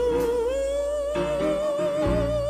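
Gospel song: a solo voice holds one long note with vibrato, rising a little about half a second in, over sustained accompaniment chords that change about a second in.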